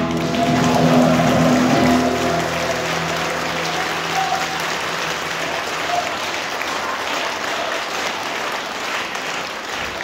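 A song's final held chord dies away in the first two seconds, followed by a concert audience clapping steadily.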